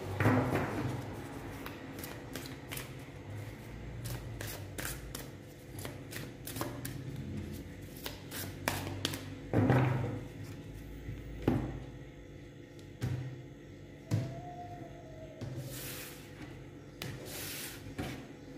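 A deck of tarot cards being handled and shuffled by hand: a steady run of light card clicks and flicks, a few louder taps around the middle, and two short riffling swishes near the end. Faint background music plays underneath.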